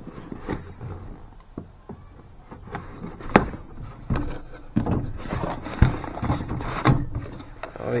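Cardboard shipping box being cut open along its packing tape with a knife, then its flaps pulled back: irregular scrapes, rustles and sharp knocks of cardboard being handled, the loudest knocks coming about three and a half, six and seven seconds in.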